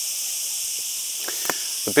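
Steady high-pitched hiss of an outdoor insect chorus, with two faint clicks in the second half.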